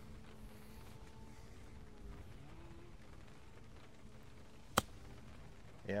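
A golf iron striking the ball on a short bump-and-run chip from the rough: one sharp click near the end.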